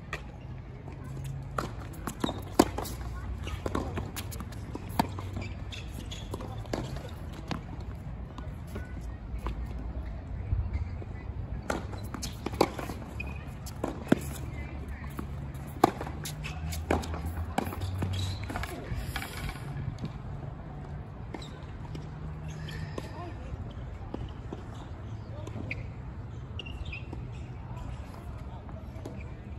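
Tennis balls struck by rackets and bouncing on a hard court during rallies: sharp pops at irregular intervals, several seconds of play at a time, over a steady low rumble.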